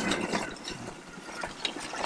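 Home-built electric go-kart rolling over a rough dirt-and-gravel track, with its scrap frame and parts rattling in a fast run of small clicks.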